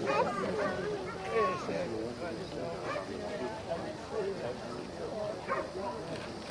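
A dog barking a few short times over people's voices talking in the background.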